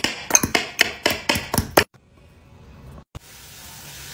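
Kitchen utensils knocking as onion is chopped and avocado is mashed in a glass bowl: about ten quick, sharp taps over the first two seconds, then a faint steady hiss.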